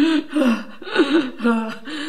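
A woman sobbing aloud: a string of short, wavering cries of about half a second each, broken by gasps.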